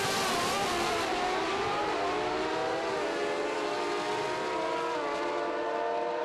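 Two naturally aspirated Pro Stock drag-racing motorcycles running at full throttle down the strip. Their high engine note is held steady and steps up in pitch a couple of times.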